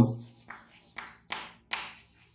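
Chalk writing on a chalkboard: four short, sharp chalk strokes spread over about a second and a half.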